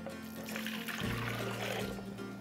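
Water poured from a measuring cup into a Vitamix blender container: a soft, steady pour, with quiet background music underneath.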